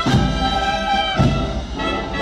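Brass marching band playing a slow procession march: sustained trumpet and trombone chords with a low beat about once a second.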